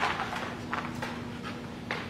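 A dog running across a rubber-matted floor: a handful of irregular footfalls and taps from its paws, over a steady low hum in the room.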